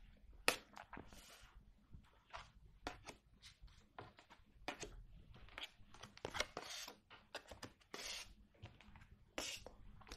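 Petit Lenormand cards being dealt one by one onto a wooden tabletop: a faint, irregular string of light taps and short swishes as each card slides off the deck and is laid down.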